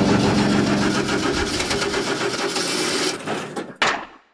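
Title-card sound effect: a loud, rapid mechanical rattle over a steady low hum, dying away about three seconds in, then one sharp hit just before the end.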